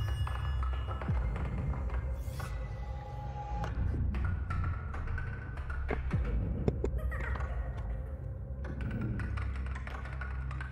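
Film trailer soundtrack: a low, droning score with scattered taps and knocks over it.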